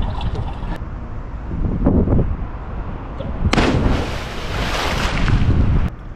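Pool water sloshing and splashing around a camera at the water surface, with a heavy low rumble. A louder rush of splashing begins about three and a half seconds in and cuts off suddenly near the end.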